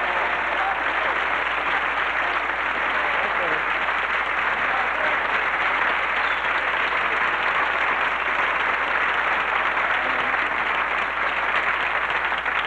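Studio audience applauding steadily, a dense, even clapping.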